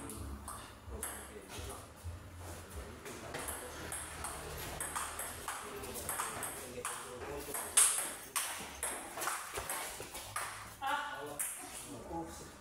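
Table tennis ball being struck back and forth in a rally, a quick series of sharp clicks off the paddles and table, the loudest hit about eight seconds in.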